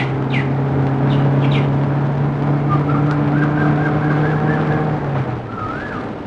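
Car engine running steadily as a saloon car pulls up, its hum dropping away about five seconds in as it comes to a stop. Birds chirp a few times near the start.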